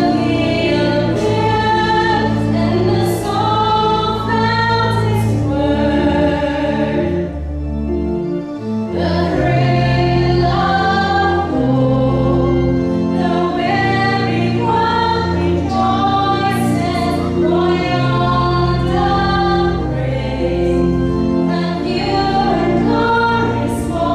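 A woman singing a gospel-style Christmas song through a handheld microphone, over musical accompaniment with steady held bass notes and choir-like voices. There is a short break between phrases about eight seconds in.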